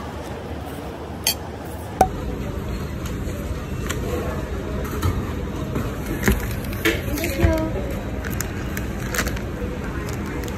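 Shopping-mall ambience: a steady murmur of background voices, with a sharp click a little over a second in, a knock at about two seconds, and several light clinks through the middle.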